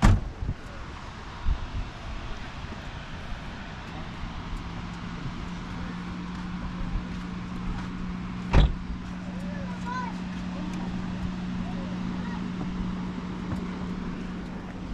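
Sharp plastic clicks from a lidded travel tumbler and handlebar cup holder being handled, one at the start and a louder one a little past halfway. A steady engine hum sets in about four seconds in.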